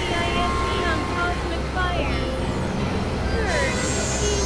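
Experimental synthesizer noise music: many short pitched blips and gliding tones scattered over a steady low drone.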